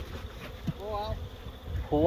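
Honeybees buzzing around an open hive, with a louder, wavering buzz about a second in.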